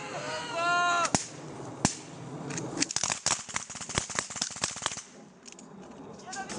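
A man shouts. Then two single rifle shots come about a second apart, followed by a rapid, irregular volley of gunfire lasting about two seconds, from several rifles or an automatic weapon.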